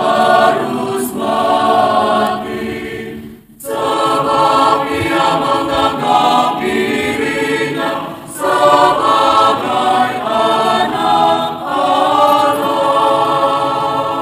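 Choir singing the crowd's part of the Good Friday Passion in Indonesian, "we have a law, and by that law he must die". The singing comes in phrases, with a short break about three and a half seconds in and another about eight seconds in.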